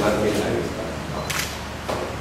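Several people talking in a room, with sharp camera-shutter clicks about a second and a half in and again near the end.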